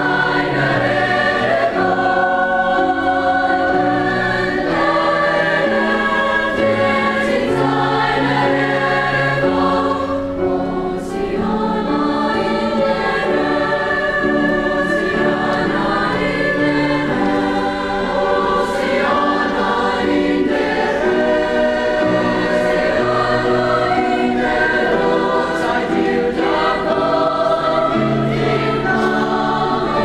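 Mixed-voice high school choir singing in parts, sustained chords shifting every second or so, with a brief softening about ten seconds in.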